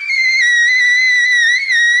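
Trumpet holding one long scream note in the extreme upper register, its pitch wavering slightly.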